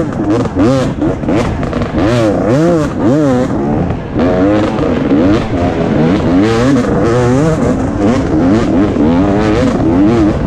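2017 KTM 250 XC-W's single-cylinder two-stroke engine under hard riding, its pitch rising and falling over and over as the throttle is opened and chopped and the gears are run.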